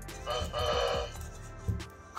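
An EMO desktop robot gives one short synthetic voice-like call, under a second long, as its head is touched. Background music plays under it.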